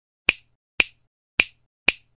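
Four sharp finger snaps, evenly spaced about half a second apart, used as an intro sound effect.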